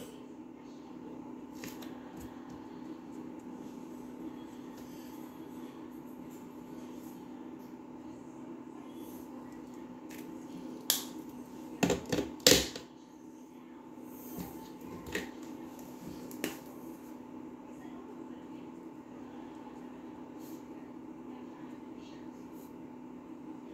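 Plastic markers being handled and swapped: a quick cluster of sharp clicks and knocks about eleven to twelve and a half seconds in, over a steady low hum in the room, with a few faint ticks elsewhere.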